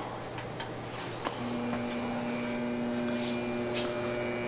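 Crankshaft balancing machine's electric drive starting with a click about a second in, then running with a steady hum as it spins a Suzuki 650 twin crankshaft for a balance reading.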